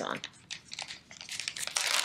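Plastic package of sliced cheese crinkling and crackling as hands work it open, the crackles sparse at first and growing denser and louder in the second half.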